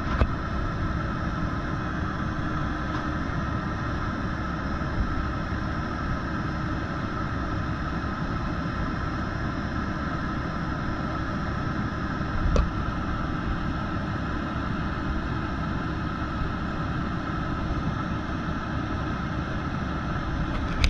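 Caterpillar C15 diesel engine of a Kenworth T800 boom truck running steadily at idle, driving the hydraulics of the Altec crane as it is operated, with a steady whine over the engine note. A single brief knock about twelve seconds in.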